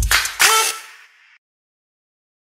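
End of an electronic intro jingle: a last bass-drum hit, then a short final chord stab about half a second in that rings briefly and fades out within a second.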